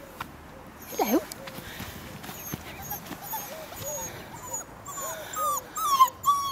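Floodle puppy whimpering: a string of short, high whines that rise and fall, coming louder and more often toward the end, with one louder swooping call about a second in.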